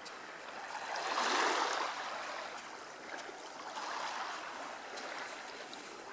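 Small waves of a calm Baltic Sea lapping on a sandy shore, a soft wash that swells up about a second in and again around four seconds in.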